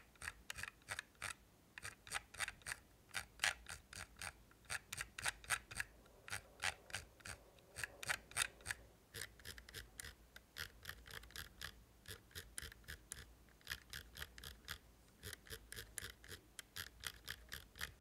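Lamzu Maya gaming mouse scroll wheel being rolled, its encoder ticking notch by notch in quick runs with short pauses between. The ticks are crisp and even, with no crunching.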